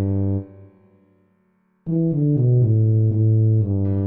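Low bass melody of a tuba part played back note by note. A phrase ends just after the start and dies away to near silence; about two seconds in, a new phrase of short detached notes starts, ending on a held low note near the end.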